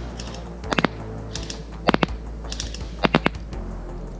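Cyma CM030 airsoft electric pistol firing single shots at a 20 m target: three groups of sharp clicks about a second apart. Under them runs quiet background music.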